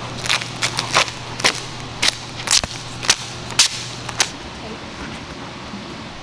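Vinyl wrap film being handled and stretched over a car's body panel, giving about nine sharp snaps and crackles in the first four seconds, over a low steady hum.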